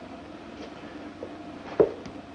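Steady hiss and hum of an old film soundtrack with no dialogue, broken by one short, sharp knock near the end.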